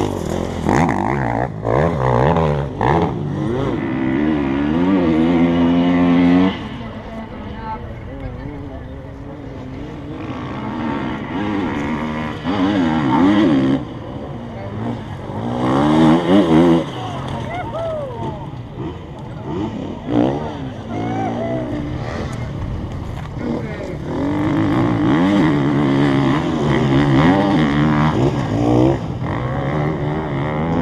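Enduro dirt bike engines revving hard, their pitch climbing and dropping with throttle and gear changes as several bikes go past one after another. The loudest passes come about five seconds in, around thirteen and sixteen seconds, and over the last few seconds.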